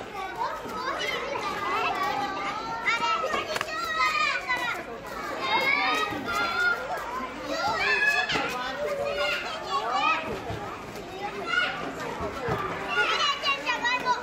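A crowd of children shouting and calling out at once, many high voices overlapping with no clear words, like children playing together.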